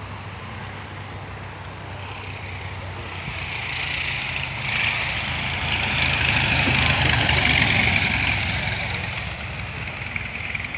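De Havilland Tiger Moth biplane's engine and propeller running as the aircraft lands and rolls past, growing steadily louder to a peak about three-quarters of the way through, then easing off a little.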